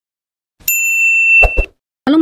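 Notification-bell ding sound effect of a subscribe animation: one clear, high ding about two-thirds of a second in that rings for just under a second, followed by two short low thumps.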